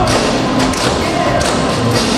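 A group of dancers' tap shoes striking a wooden stage in a quick, irregular run of taps and heavier stamps, with music playing underneath.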